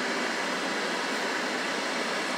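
Steady rushing air noise inside a vehicle, even and unchanging, with no distinct tones or knocks.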